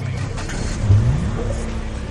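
Tail of a news programme's title music: a low pitched sound effect glides upward about a second in, then holds. The rise resembles an engine revving.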